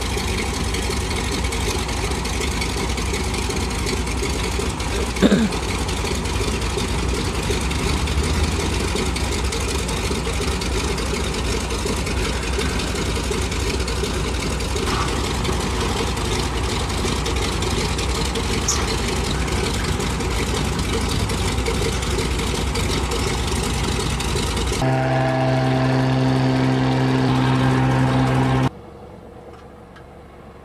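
A floatplane's engine running steadily on the water, a continuous loud drone. About 25 seconds in it gives way to a steadier hum with a clear pitch, which cuts off suddenly near the end.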